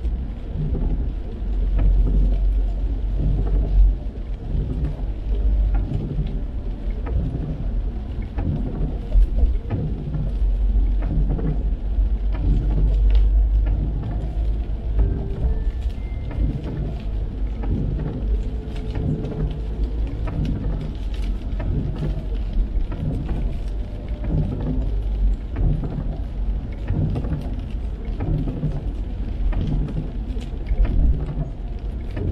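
Inside a car driving on a wet road: a steady low rumble of tyres and road noise, with rain on the windshield.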